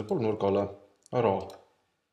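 A man speaking in Estonian: two short phrases with a brief pause between them.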